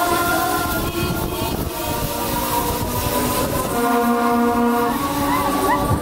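Loud music over a fairground ride's sound system, with a long horn-like chord from about four to five seconds in.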